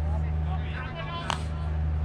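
Faint distant voices over a steady low hum, with one sharp pop a little past the middle.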